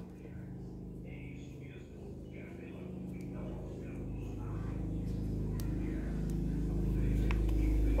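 An egg seller's truck approaching along the street: its engine hum and loudspeaker sound grow steadily louder over the second half.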